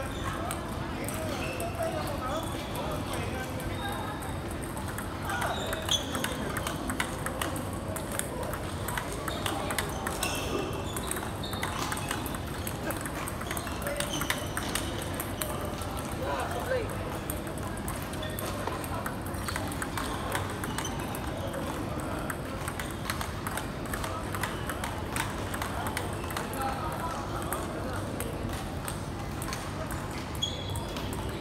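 Table tennis balls clicking off paddles and tables in quick, irregular taps, from several tables at once, over background voices.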